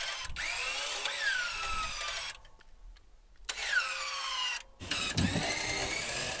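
Wrecker winch motor whining in short on-off bursts, three pulls with a pause of about a second between the first and second. Each pull's pitch glides and then sags as the line takes up load. The winch is being pulsed to rock a stuck vehicle's wheel free of the mud.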